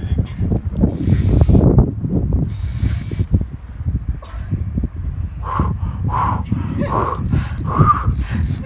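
Wind buffeting the microphone in a steady low rumble, with four short calls close together near the end.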